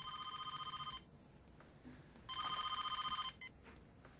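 Telephone ringing twice, each ring a trilling tone about a second long with a pause between.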